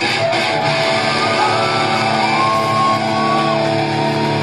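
Live rock band playing loudly: electric guitars with long held notes that slide up in pitch, over a steady band sound.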